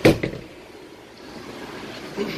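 A sharp thump at the very start, with a smaller knock just after, as a hinged plastic lid over a dash storage compartment is shut. Then low, steady background noise.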